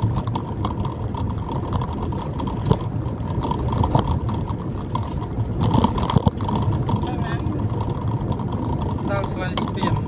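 Inside a moving car on a wet road: steady low engine and road noise, with voices talking faintly now and then and a few brief knocks around the middle.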